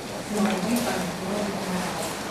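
A person's voice speaking indistinctly, in a wavering, uneven line of talk.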